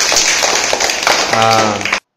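Hand clapping mixed with voices, then a man's drawn-out "aa" near the end.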